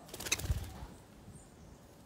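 Wingbeats of a small green parakeet flying from a wooden feeding platform: a quick flurry of flaps lasting under a second, with a low thump in the middle of it.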